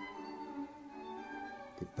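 Background music of bowed strings, held sustained notes.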